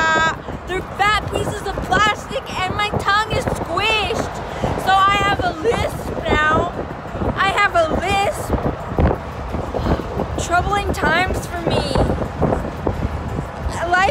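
A young woman's high-pitched voice, loud, in short phrases without clear words, over the steady rush of wind buffeting the microphone in an open-top convertible at freeway speed.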